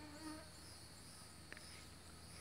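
Faint outdoor insect chorus with a steady high trill, a brief buzz of a flying insect passing near the start, and one short chirp about a second and a half in.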